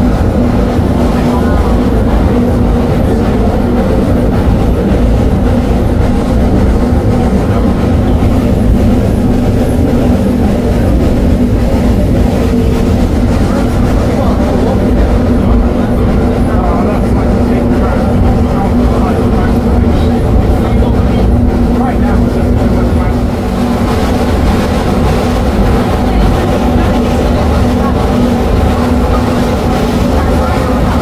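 Rack-railway steam locomotive propelling a passenger carriage uphill, heard from inside the carriage: a steady, loud run of engine beats and running-gear clatter, with the carriage rattling along.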